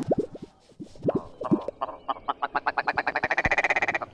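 Electronic sound effects ending a track: a few quick chirps that fall in pitch, then a fast rattle of pulses at about ten a second that climbs in pitch near the end.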